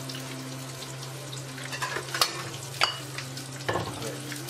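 Cashew nuts deep-frying in hot oil in a metal pot, sizzling steadily, while a metal slotted spoon stirs them and clinks against the pot a few times in the second half.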